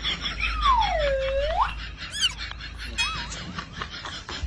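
Comic whistle-like sound effect: a smooth tone that slides down and then back up, followed by a few short warbling, wobbling tones near the end.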